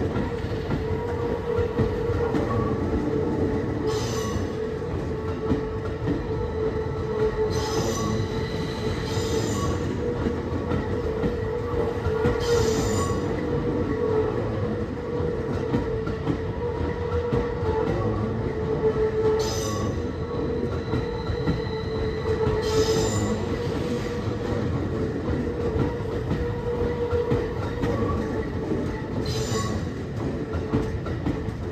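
Tokyo Metro 16000 series electric train rolling slowly through depot trackwork, with a steady rumble and a continuous wheel squeal. Sharp clacks come every few seconds as the wheels cross rail joints and points.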